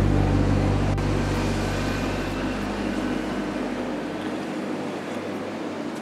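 Background music: the last low chord of a song held and slowly fading away, dying out about two-thirds of the way through.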